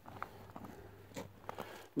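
Faint footsteps crunching on dry grass, a few soft steps over low outdoor background noise.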